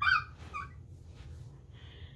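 A young woman's two short, high-pitched squeaks, close together near the start and made behind the hand held over her mouth. They are whimpers of excitement at a surprise gift, followed by quiet breathing.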